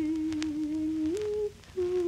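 Pre-war Japanese ryūkōka song played from an old shellac record: a melody of long held notes that slides up to a higher note about a second in, breaks off briefly, then resumes on another held note, with faint surface clicks.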